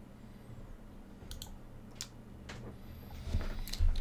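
Computer mouse clicking: a handful of sharp single clicks, spaced about half a second to a second apart, over a low steady hum. A louder low thump comes near the end.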